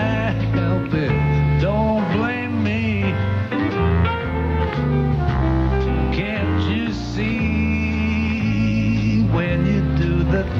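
Live jazz band of saxophone, guitar, bass and drums playing an instrumental tune, the lead line bending and wavering in pitch over a walking bass.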